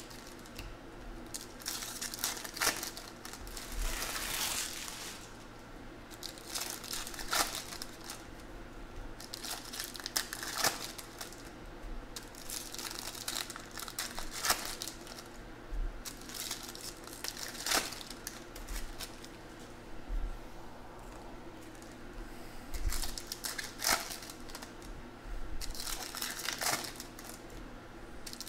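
Foil trading-card pack wrappers crinkling and tearing open, with cards slid and handled between them, in short irregular bursts.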